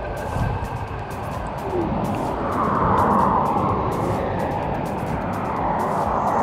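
Background music over the steady rush of wind and road noise from a Yokamura i8 Pro dual-motor electric scooter riding at speed. The rush swells louder in the middle.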